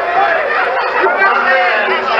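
Several voices talking over one another at once, a loud, steady babble with no single voice standing out.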